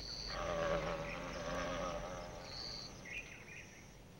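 Male thynnid wasp's wings buzzing as it flies off after tearing free from a hammer orchid; the pitched buzz wavers and fades away over about two and a half seconds.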